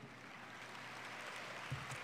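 Faint audience applause that slowly builds.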